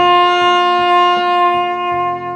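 Alto saxophone holding one long, steady note over a backing track with bass and plucked guitar chords.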